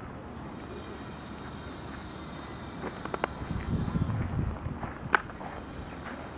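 Outdoor ambience with wind buffeting the microphone, rising to a gusty low rumble through the middle, and one sharp click near the end.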